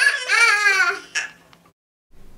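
A child's high-pitched, wavering shriek or wail that breaks off about a second in, followed by a short click and then silence.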